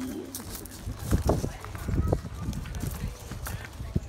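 Footsteps crunching on gravel, an irregular run of steps while walking, over a low rumble of wind on the microphone.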